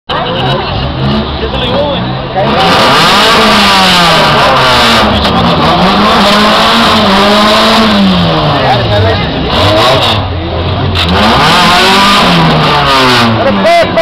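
Four-cylinder car engines revving hard, their pitch climbing and dropping over several seconds at a time, louder from about two and a half seconds in.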